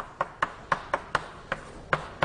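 Chalk on a blackboard while a word is written in capitals: a quick run of sharp taps, about four a second, as the strokes go down.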